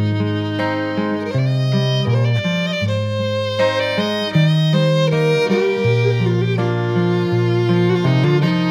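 Fiddle playing a melody over acoustic guitar accompaniment in an instrumental break of an Americana folk song.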